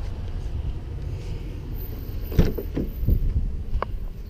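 Pickup truck rear passenger door being unlatched and swung open, heard as a few clicks and knocks in the second half, over a steady low rumble.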